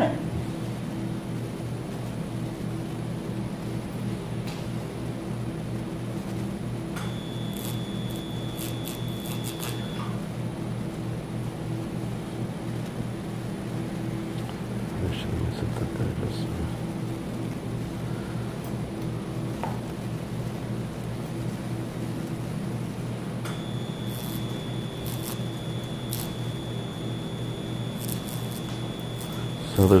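Bipolar electrocautery unit sounding its steady high activation tone twice, for about three seconds and then for about six seconds near the end, with faint clicks, over a steady low hum.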